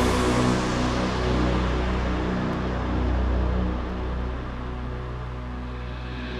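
Melodic techno breakdown with no drums: a steady deep bass drone under held synth pad chords. The sound grows gradually darker and quieter.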